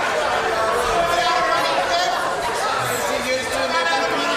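Many voices talking over one another in a large chamber: parliamentary members chattering while the sitting is halted by a power loss.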